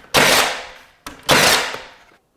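Milwaukee M18 cordless trim nailer firing twice, about a second apart, driving nails into panel molding. Each shot is a sharp bang with a short fading tail.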